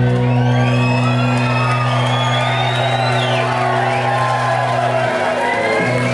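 Rock band's amplified guitar and bass notes held and ringing, with no drums, while the crowd whoops and cheers over them. The held notes break off briefly near the end and come back.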